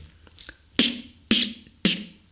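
Beatboxed 808 snare {T}: a forced, unaspirated ejective made by squeezing air out between the tongue tip and the alveolar ridge, imitating a Roland TR-808 snare drum. It is made three times, about half a second apart, each a sharp, hissy click that dies away quickly.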